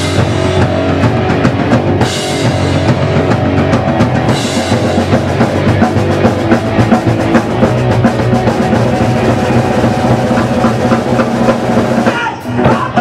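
Live rock band playing loudly: electric bass, electric guitar and drum kit in an instrumental passage with no vocals.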